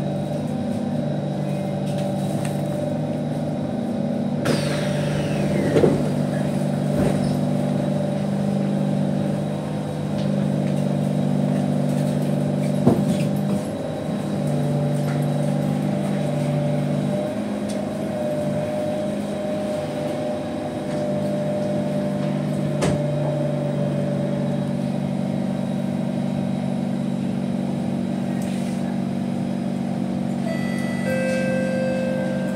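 A C151 metro train standing at the platform with its doors open: a steady low electrical hum of several tones from its onboard equipment, the lower tones cutting out briefly a couple of times in the middle. A brief falling whistle sounds about five seconds in, and a few sharp knocks come through.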